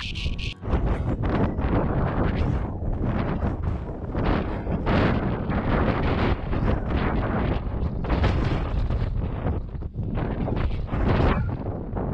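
Strong gusting wind buffeting the microphone, loud and rising and falling gust by gust.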